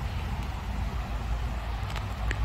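A steady low rumble of background noise with a faint hiss above it, the kind left by distant traffic or wind.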